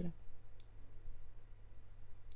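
Quiet room with a steady low hum and a faint single click about half a second in.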